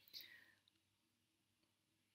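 Near silence: room tone, with a faint short breath near the start.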